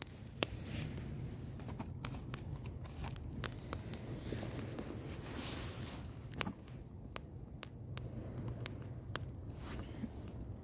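Wood campfire crackling, with many sharp irregular pops over a low steady rumble of flame.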